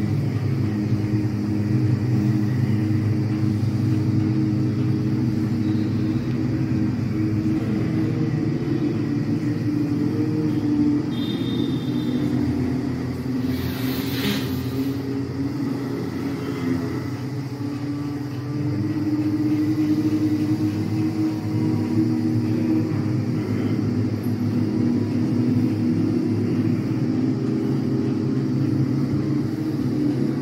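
A group of people humming together on a long, steady 'mmm' at many different pitches that overlap into a drone, as in bhramari (humming bee breath) pranayama. The humming thins around the middle and swells again, and a short hiss comes about halfway through.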